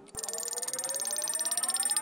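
Spinning-wheel sound effect: rapid, even ticking with a tone rising in pitch underneath, growing steadily louder.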